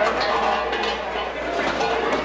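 Several people's voices talking and shouting over one another, with no single clear speaker.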